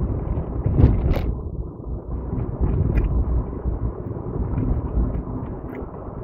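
Chewing a bite of a crispy fried chicken taco, with a few short crunches, the sharpest about a second in, over a steady low rumble inside a car's cabin.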